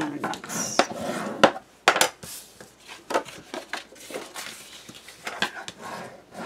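Kraft cardstock being handled and pressed down on a tabletop: scattered taps, knocks and paper rustling, with a few sharper knocks in the first two seconds.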